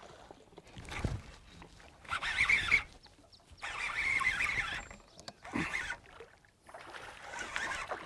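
A largemouth bass hitting a topwater frog and thrashing at the surface: a series of loud water splashes, the first about two seconds in and more through the rest, with a dull thump about a second in.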